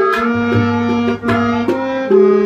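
Tabla playing a rhythm, sharp right-hand strokes over the deep, ringing bass drum, under a melody of long, steady held notes that step from pitch to pitch.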